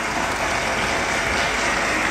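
An audience applauding steadily after a speech.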